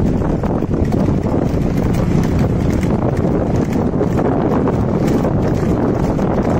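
Hooves of a pair of oxen clattering on asphalt as they trot, pulling a light bullock racing cart, over a steady low rumble.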